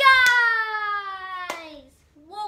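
A boy's long, drawn-out vocal call, held for almost two seconds as its pitch slides steadily down. Two sharp clicks cut through it, one just after it begins and one about a second and a half in.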